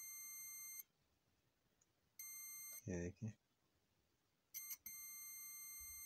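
Continuity buzzer of a DT9205A digital multimeter beeping as its probes touch the contacts of a car power-window switch: a steady beep of under a second, another about two seconds in, two short blips, then a longer beep near the end. Each beep signals continuity through the switch contacts, now conducting after being cleaned of carbon.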